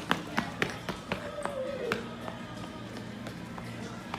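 A child's footsteps running across a hard floor: a quick run of sharp taps in the first second or so that thins out afterwards.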